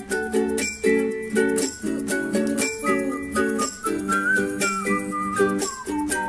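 Instrumental music: a soprano ukulele strumming chords in a steady rhythm, with a high gliding lead melody over it and no singing.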